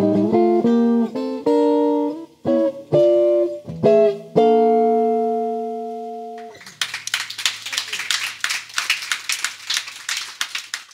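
Solo archtop jazz guitar playing a closing run of plucked chords and single notes, ending on a held final chord that rings out and fades for about two seconds. As it dies away, about two-thirds of the way in, an audience breaks into applause.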